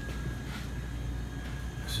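Steady low machine hum with a faint thin high whine.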